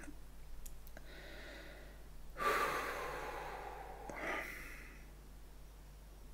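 A man breathing out heavily, one long breath about two and a half seconds in and a shorter one about four seconds in, as he takes a breath to compose himself.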